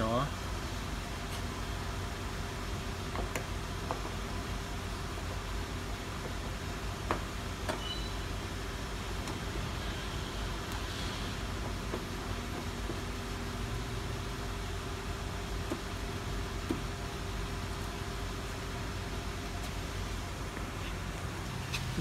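Steady background hum, with a few faint clicks and taps as a replacement key lock cylinder is handled and fitted into a car's door handle.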